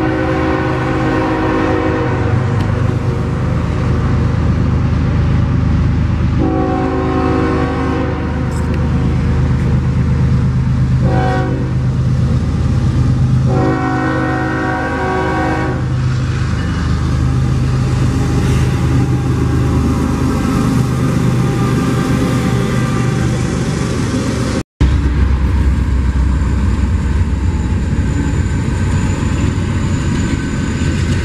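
Norfolk Southern freight locomotive horn sounding the grade-crossing signal of two long blasts, a short one and a final long one, as the train approaches the crossing. Then the heavy rumble of the diesel locomotives passing close, with a brief break in the sound a little before the end.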